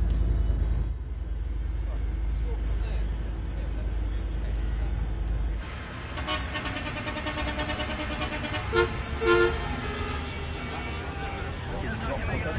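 Night street noise from celebrating football fans: a steady low rumble in the first half, then voices and car horns tooting. The loudest sounds are two short horn blasts about half a second apart a little past the middle.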